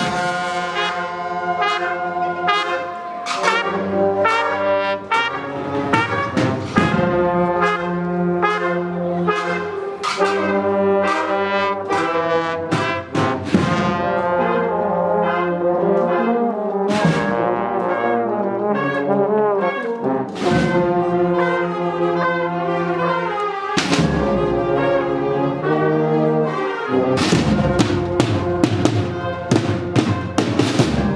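A brass marching band playing a processional march in the street: trumpets and trombones in sustained chords, with percussion strikes coming at intervals and more often near the end.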